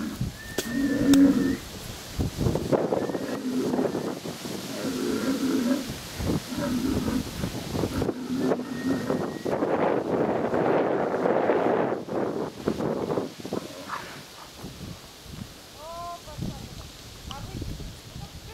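Bulls bellowing repeatedly in low, drawn-out calls, stirred up by the lingering smell of offal on the ground.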